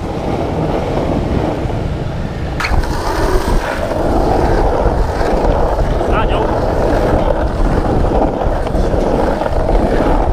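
Skateboard wheels rolling over rough asphalt on a pump track: a steady, dense rumble that grows a little louder about four seconds in. A few brief higher sounds come through at about three and six seconds in.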